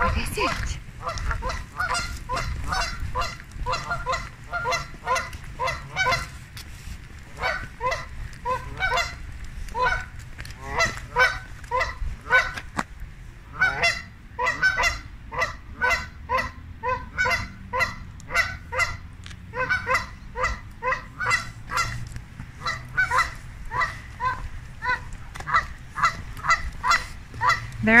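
A flock of Canada geese honking over and over: a steady run of short, nasal calls, two or three a second, overlapping from several birds.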